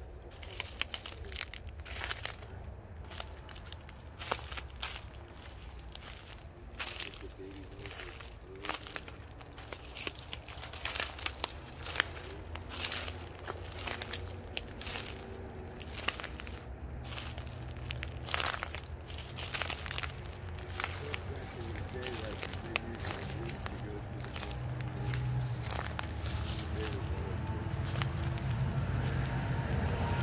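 Footsteps crunching and crackling irregularly through dry leaves and brush, with a low steady rumble that grows louder toward the end.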